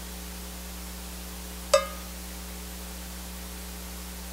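Steady electrical hum and hiss of a church sound system left open, broken about two seconds in by one short, sharp pitched tap.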